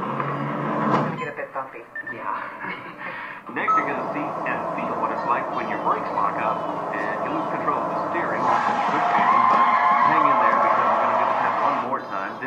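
Indistinct background voices and radio chatter mixed with test-vehicle driving sounds. A louder stretch of vehicle noise starts about eight and a half seconds in and lasts a few seconds.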